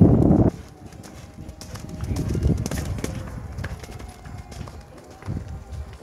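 Hoofbeats of a horse cantering on a dirt arena, loud for the first half-second as it passes close, then fainter as it moves away.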